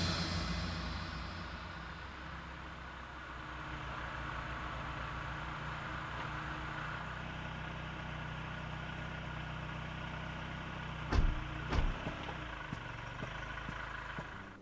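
A car engine idling with a steady low hum. Two short knocks come about eleven and twelve seconds in.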